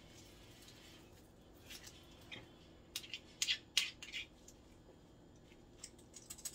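A few light clicks and taps of a metal kitchen utensil against a stainless-steel mixing bowl, most of them between about two and four seconds in.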